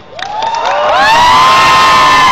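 Crowd cheering and screaming: many high-pitched voices rise together shortly after the start and are held loud.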